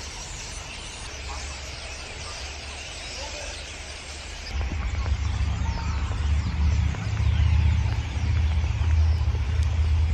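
Several birds chirping and singing faintly. About four and a half seconds in, a louder, uneven low rumble of wind on the microphone sets in and largely covers the birdsong.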